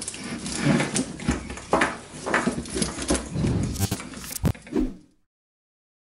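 An old factory Harley-Davidson wiring loom being stripped of its heat wrap by hand: irregular rustling, scraping and clicking of cable, tape and plastic parts, stopping abruptly about five seconds in.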